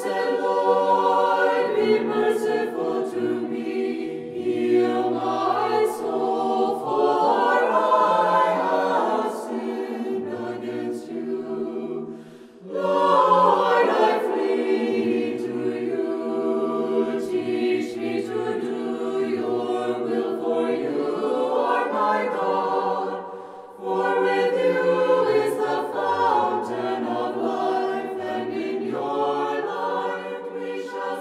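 A choir singing a cappella in long held phrases, with short pauses about twelve and twenty-three seconds in.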